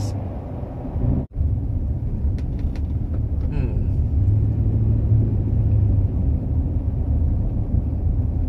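Steady low rumble of engine and tyre noise inside a moving car's cabin, with a sharp brief dropout about a second in.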